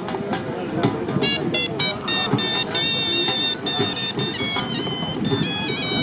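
A wind instrument plays a high, piping melody in held notes that change pitch in steps, starting about a second in, over the babble of a crowd.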